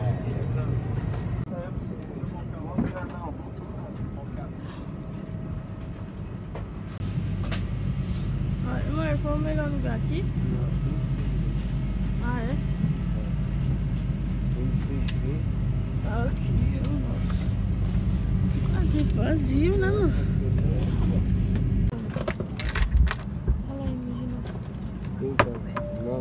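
Steady low hum of an airliner cabin, growing louder about seven seconds in, with passengers' voices murmuring in the background and a few clicks near the end.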